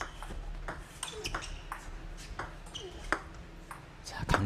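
Table tennis rally: the plastic ball clicking sharply off rackets and table about a dozen times at an uneven pace. It is a defensive exchange, with one player chopping the ball back.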